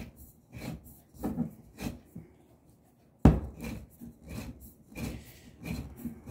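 Rotary oil filter cutter's wheel scraping and creaking around the thick steel canister of a Vaico oil filter as the filter is turned through it by hand. It goes in short strokes about twice a second, with one sharp knock about three seconds in.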